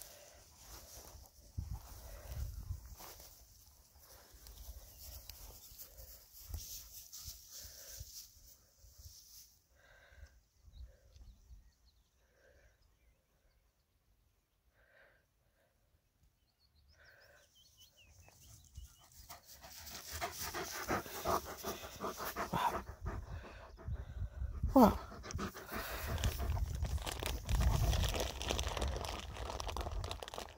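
A German Shepherd panting close by, in quick, rapid breaths that start after a quiet stretch about two-thirds of the way in.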